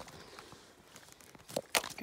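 Light crunching and crackling of dry sticks and brush underfoot, with two sharp snaps about a second and a half in.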